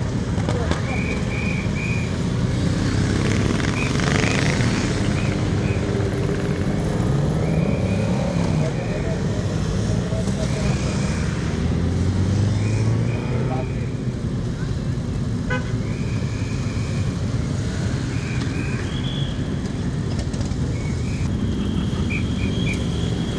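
Many motorcycles riding past in a slow column, engines running with occasional revving, and short horn beeps sounding repeatedly in small groups throughout.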